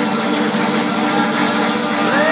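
Audience applauding steadily, with a low held note underneath.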